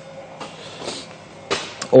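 Quiet indoor room tone in a pause between a man's sentences, with a faint breath about a second in and a short click about one and a half seconds in, just before he speaks again.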